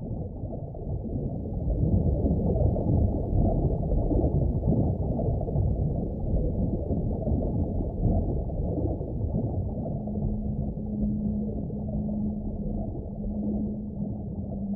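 Muffled, low underwater-style rumble from the film's sound design, swelling over the first couple of seconds. A steady low hum joins it about ten seconds in.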